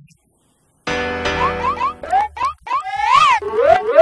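A comic music sting for a scene change starts suddenly about a second in: a held chord under a run of quick upward pitch slides, springy boing effects, with one higher rising-then-falling swoop near the middle.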